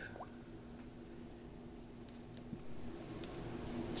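Quiet room tone with a faint steady hum and a few small clicks from a smartphone being handled, about two and a half and three seconds in.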